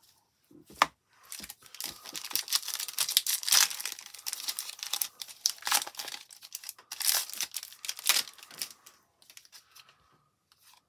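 A Topps Series 2 baseball card pack wrapper being torn open and crinkled by hand: a sharp crackle just under a second in, then continuous crinkling and ripping that stops about a second before the end.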